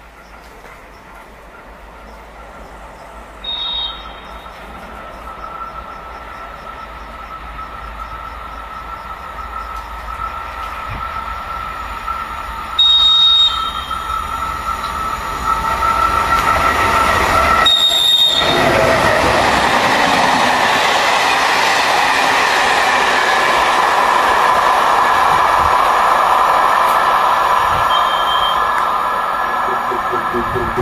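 Czechoslovak E499.0 'Bobina' electric locomotive hauling a passenger train through a station; the train's noise builds steadily as it approaches. It sounds short high-pitched whistle blasts in greeting: a faint one a few seconds in, a loud one about halfway through and another shortly after. The rolling noise of the coaches then stays loud as they pass.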